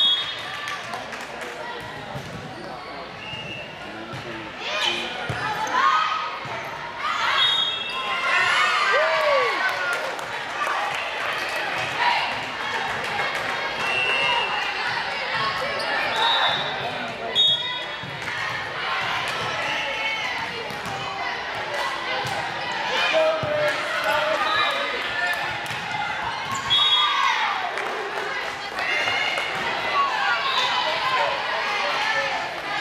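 Volleyball play in a gymnasium: the ball being struck and bouncing, the hits echoing around the large hall, with players calling and people talking throughout.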